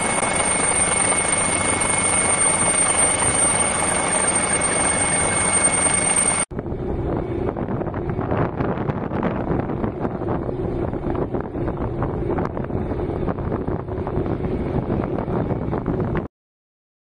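Steady helicopter engine and rotor noise with a high, constant whine. About six seconds in it cuts to wind buffeting the microphone over a steady low engine hum.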